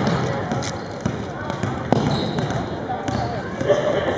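Basketball bouncing on a hardwood gym floor, heard as a few sharp thumps about two seconds apart, over steady voices and chatter echoing in the hall.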